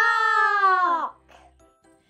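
A high singing voice holds one long final note of a short intro jingle, dipping in pitch as it stops about a second in; faint low steady tones linger after it.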